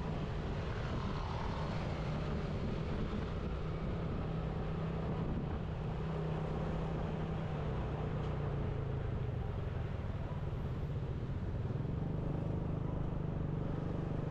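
Motorcycle engine running steadily at cruising speed with road and wind noise, heard from the moving bike, with other traffic around it.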